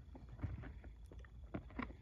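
Faint handling noise: a few light clicks and rubs of a hard plastic card case being held and turned in the hand, over a low steady hum.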